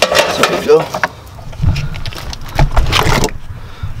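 Handling noise from a loose car wiring harness being worked into the dash area: scattered clicks and knocks, with a couple of dull thumps in the second half and a brief murmur of voice near the start.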